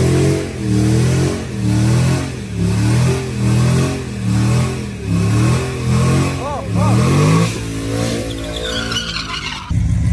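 A 5.3-litre V8 pickup truck revving up and down about once a second during a burnout, its rear tyre spinning in smoke, with a tyre squeal near the end. The sound changes abruptly to a steadier engine note just before the end.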